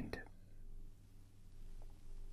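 The last syllable of a man's word at the very start, then a pause of faint room tone with a steady low hum.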